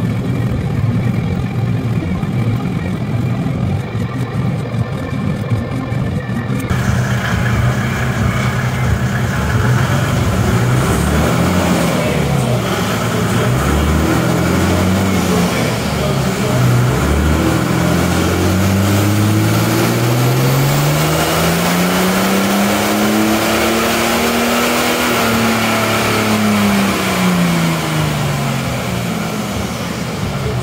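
Mercedes-Benz OM606 3.0-litre turbo-diesel straight-six on a chassis dyno, running a stage 1.5 tuned ECU: after a few short rises in revs, it makes one long pull, revs climbing steadily for several seconds, peaking about three-quarters of the way through, then falling back. A steady noise from the dyno's cooling fan runs beneath.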